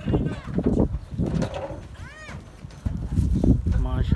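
A few short, high-pitched animal calls that rise and fall in pitch, the clearest about two seconds in, over rumbling gusts of wind on the microphone.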